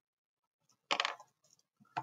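A brief clatter of small hard objects about a second in, followed by a single sharp click near the end.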